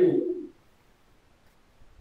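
A man's voice drawing out the end of a spoken word, falling in pitch, then near silence: room tone.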